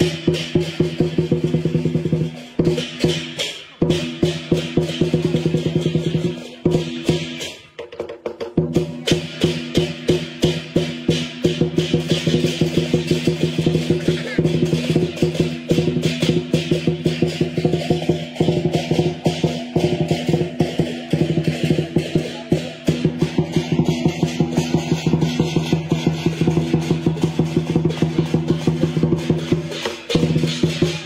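Lion dance percussion music: drum strokes with ringing cymbals and gong, beating a fast, steady rhythm, with a short break about eight seconds in.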